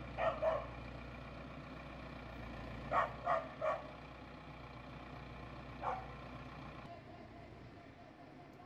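Massey Ferguson tractor's diesel engine idling steadily while a dog barks: twice at the start, three times about three seconds in, and once more near six seconds.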